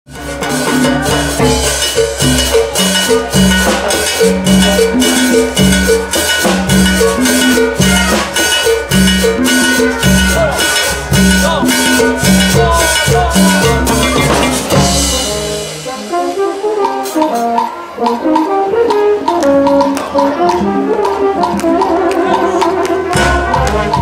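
A Peruvian brass banda orquesta playing a huayno: trumpets and trombones over sousaphone bass and a drum kit, congas and timbales keeping a steady beat. About two-thirds of the way through, the bass and drums drop out for several seconds while the horns carry the melody. The full band comes back in near the end.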